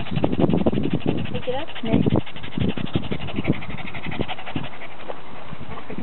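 A dog panting close to the microphone, with people talking in the background.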